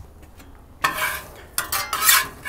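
Metal spatula scraping and clinking on a steel flat-top griddle, starting about a second in, with a few sharper scrapes near the end.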